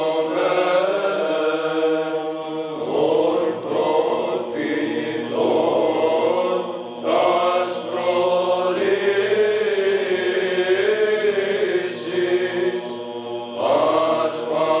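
Orthodox church chant: a slow, melodic vocal line over a steady held drone note, sung in long phrases with short breaks between them.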